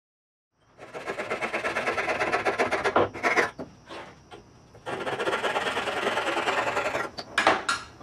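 A brush scrubbing rapidly back and forth on the edge of an MDF board, a dense scratchy rubbing that starts after a moment of silence, with a louder burst about three seconds in, a quieter spell, and more scrubbing.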